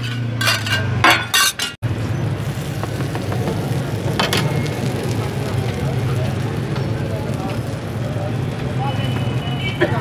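A metal spatula clinks several times against a tawa as a chicken mixture is stirred. After an abrupt cut, oil sizzles steadily under a shami patty and a burger bun frying on the flat griddle.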